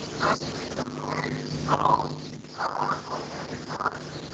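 Irregular short bursts of sound over a steady low hum, coming through a participant's unmuted microphone on an online video call.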